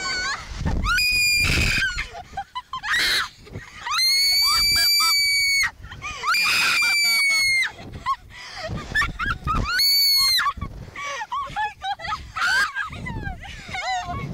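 Two young women screaming on a Slingshot reverse-bungee ride: long, high-pitched screams, several held for a second or more, with shorter yelps and cries between.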